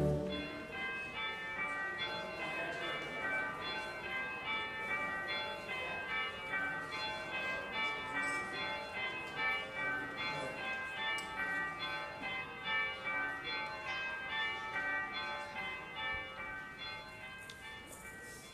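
Church bells ringing a quick, continuous run of overlapping notes, fading toward the end.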